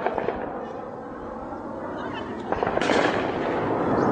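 Warplane's jet roar overhead, swelling from about halfway through, with a few sharp cracks near the start and about halfway.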